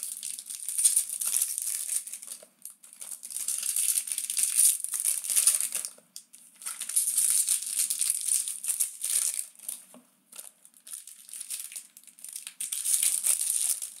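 Foil wrapper of a 2015 Bowman Draft trading-card pack crinkling as hands handle and tear it open, in several stretches broken by brief pauses.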